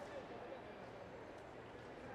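Faint, indistinct voices carrying through the hum of a large sports hall, with a couple of light clicks about a quarter and half a second in.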